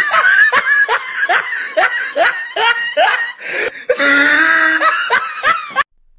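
A person laughing hard in quick repeated bursts, about two or three a second, each falling in pitch, with a longer drawn-out laugh about four seconds in; it cuts off suddenly just before the end.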